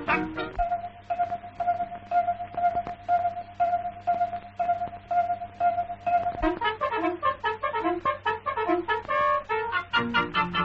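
Orchestral cartoon score: a long held high note, tagged as brass, over light regular ticks, that breaks about six and a half seconds in into a bouncy melody of short notes.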